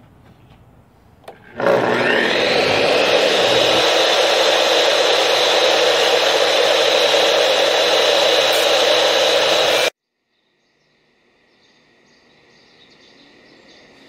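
Wet tile saw with a diamond blade, switched on about a second and a half in, spinning up with a rising whine and then running steadily while porcelain tile is fed into the blade to cut a curved notch. The sound cuts off abruptly near the end, leaving only a faint hum.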